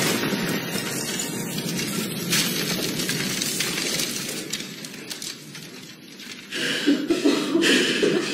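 Debris and rubble pattering down like rain after an explosive blast, fading away over about six seconds. Near the end a man's heavy, strained breathing comes in.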